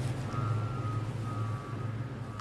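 Steady low rumble of a vehicle engine, with two electronic beeps of about half a second each in the first second and a half.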